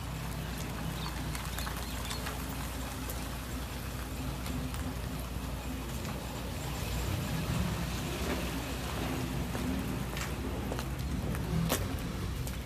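A car engine running steadily at low speed, a low rumble that swells slightly past the middle, with a few faint clicks.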